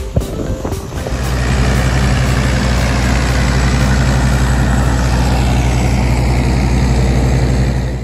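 Background music ends about a second in, giving way to a steady, loud drone of airport apron machinery: a low hum with a faint throb under a rushing hiss, from the aircraft and ground equipment running beside a parked airliner.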